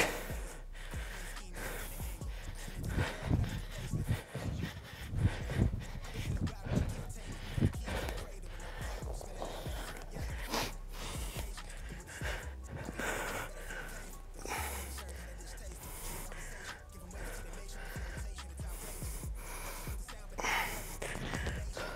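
A man breathing hard in short, sharp breaths and gasps while doing bodyweight exercises. There are uneven bursts in the first several seconds, during squat jumps, over background music.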